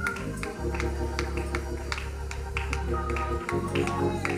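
Slow live worship music: held organ chords over a long, low bass note, with a steady ticking beat of light percussion.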